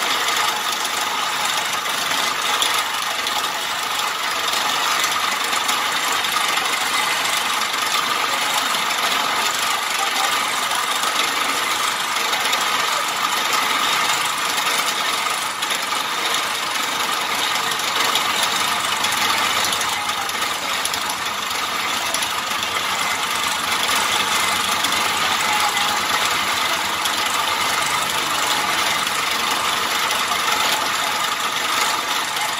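Wood lathe running with a chisel cutting into a spinning wooden spindle: a steady, dense, fast rattling scrape that carries on without a break.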